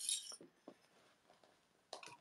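Faint handling sounds: a brief rustle of fabric at the start, then a few light clicks as sewing clips are pressed onto the layered fabric.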